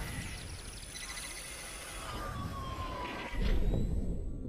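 Synthetic logo-intro sound effects: electronic tones gliding in pitch, with a slowly falling tone through the middle. A louder sudden hit comes about three and a half seconds in and then fades.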